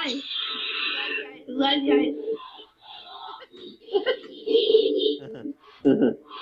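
Chopped, garbled fragments of voice-like sound and short bursts of hiss, breaking off every fraction of a second, from an ITC spirit-box style app used to seek spirit voices.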